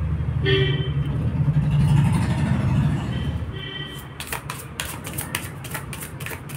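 A motor vehicle's low engine noise passing, with two short horn toots, then from about four seconds in a deck of tarot cards being shuffled: a quick run of card clicks.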